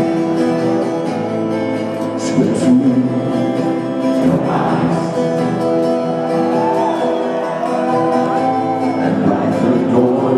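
Live rock band music: a strummed acoustic guitar over sustained held chords, with a voice singing.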